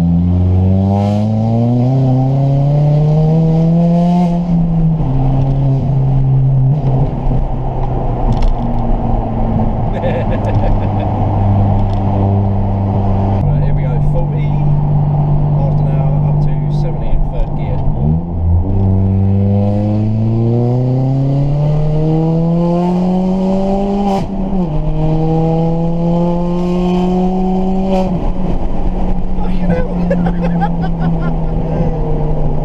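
Ford Fiesta ST engine fitted with a Revo RT330 hybrid turbo, heard from inside the cabin, pulling hard under acceleration. Its note climbs for about four seconds and drops at a gear change, then cruises. A second pull climbs from about 19 seconds to another shift near 24 seconds in.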